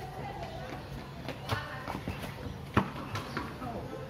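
Indistinct voices talking in the background, with one sharp knock about three quarters of the way through and a weaker one earlier.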